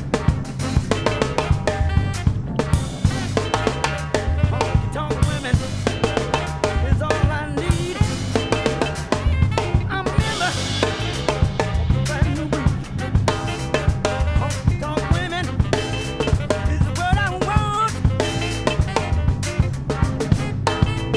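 A drum kit played in a steady funk groove, with snare, rimshot and bass drum strokes, over a backing recording of a funk band whose pitched instruments carry on through the groove.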